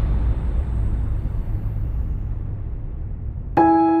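The low, fading rumble of a cinematic boom sound effect over a logo animation. About three and a half seconds in, soft piano music begins.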